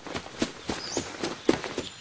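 Cartoon footstep sound effects: a quick, uneven run of light steps, about four or five a second.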